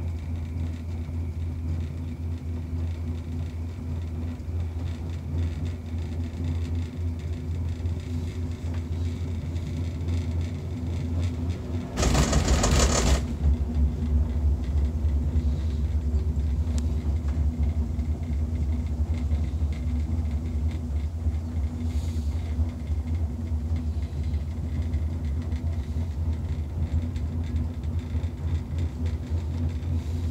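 Steady low rumble of a Skyrail gondola cabin riding along its cable, with a faint steady hum over it. About twelve seconds in comes a brief loud burst of noise lasting about a second, after which the rumble is slightly deeper and louder.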